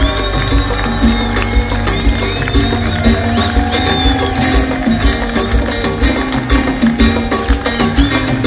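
A Latin band playing live salsa-reggae over a PA, with a steady drum beat about twice a second under bass and melody.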